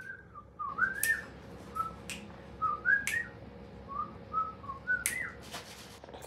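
A person whistling a wandering, unhurried tune in short rising-and-falling phrases, with a few sharp clicks between them.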